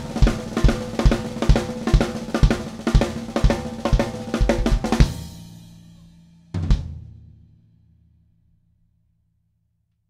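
Drum kit groove on a Yamaha Recording Custom 14"x6.5" aluminum snare drum with bass drum and cymbals, the bass drum landing about twice a second. The playing stops about halfway through and rings down. One last hit follows and rings out to nothing.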